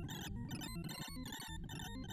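Rapid stream of short sine-wave beeps from a sorting-algorithm visualizer as WikiSort works through an array of 256 random integers. Each beep's pitch follows the value of the element being compared or written, so the tones jump about at random. They come in dense clusters several times a second.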